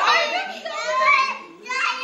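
Children's high-pitched voices talking and calling out, with a short burst of voice near the end.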